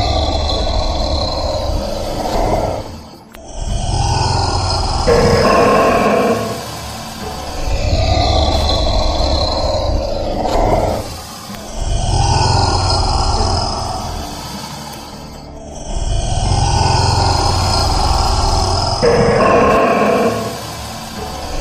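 Deep, drawn-out growling roars, one every three to four seconds, about five in all, in a repeating pattern. This is a roar sound effect put on the Komodo dragon footage, not the lizard's own voice: Komodo dragons hiss and do not roar.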